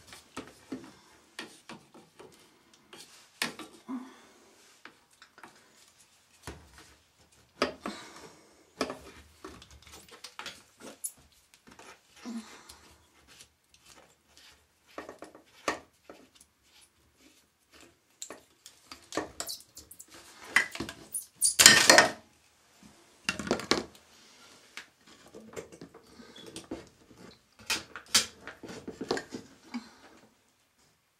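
White PVC plastic pipes being handled and worked at the floor: irregular knocks, clicks and scrapes of plastic, with a louder scraping burst about two-thirds of the way in.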